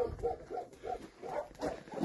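A run of short pitched animal calls, about three a second.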